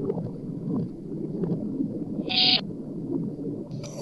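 Garbled, choppy audio from a reversed, remixed sound bank: a continuous jumble of chopped low-pitched fragments, with a brief high-pitched burst about two and a half seconds in and another starting near the end.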